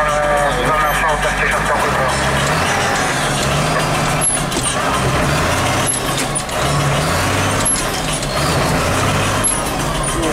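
Case CS 150 tractor engine heard from inside the cab while driving, its low note shifting up and down in steps.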